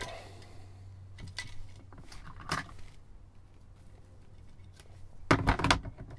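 Plastic walkie-talkie casing being handled and pressed together: a few light clicks, then a cluster of louder knocks near the end, over a low steady hum.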